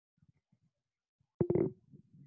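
A mostly quiet pause on a video call, broken about one and a half seconds in by a short, low, voice-like sound, a grunt or throat noise from a participant's microphone, followed by faint low rumbling.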